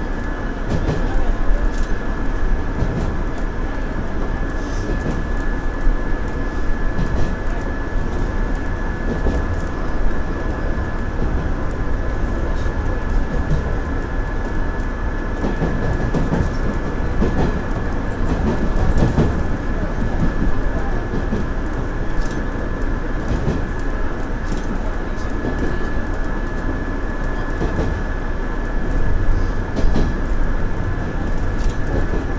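Running noise of a JR Central 117 series electric train heard from inside the cab: a steady rumble of wheels and motors, with occasional clicks of the wheels over rail joints and points. A thin high whine sits over the rumble.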